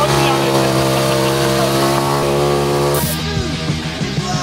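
Small dirt bike engine idling steadily, loud and even. About three seconds in it cuts off abruptly and rock music starts.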